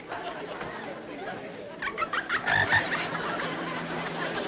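A frog croaking in a quick run of short croaks about two seconds in.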